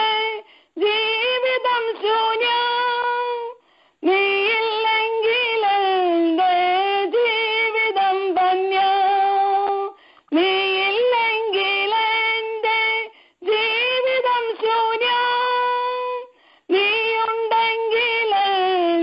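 A woman singing a devotional song in Malayalam, unaccompanied. She sings in phrases of about three seconds with short breath pauses between them.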